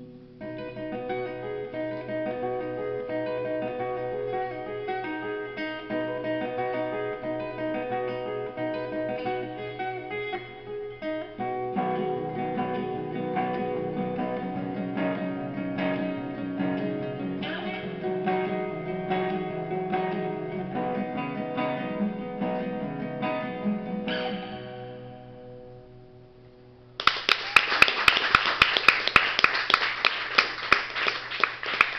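Acoustic guitar fingerpicked in a flowing pattern of ringing notes, fading out as the song ends. Audience clapping and applause breaks out near the end.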